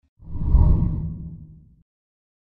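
A deep whoosh sound effect for an animated graphic transition. It swells quickly, then fades out over about a second and a half.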